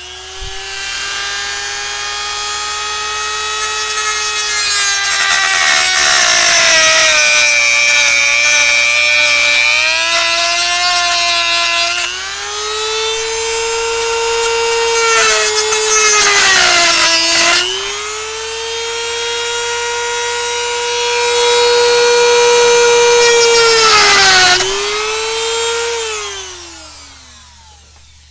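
Dremel rotary tool with a cutoff wheel running at a steady high whine and cutting the centre post off a stove knob. Its pitch sags each time the wheel bites in under load, most of all over several seconds near the start, then the tool winds down with falling pitch near the end.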